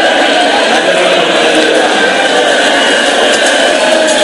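A man's voice amplified through a public-address system, chanting a mourning recitation without pause.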